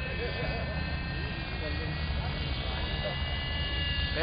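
Hirobo Sceadu radio-controlled helicopter flying overhead, a steady high-pitched whine from its engine and rotors, with faint voices underneath.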